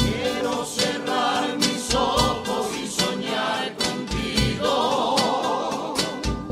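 A Cádiz carnival song: a group of voices singing together in chorus over instrumental accompaniment, with a low beat recurring about once a second.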